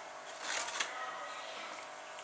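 Brief rustle with a couple of light clicks about half a second in, from hands handling the wooden model dragster.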